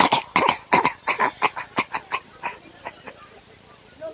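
A handheld microphone being checked with a rapid run of short, sharp pops into it, about five a second at first, then slowing and fading out after about three seconds.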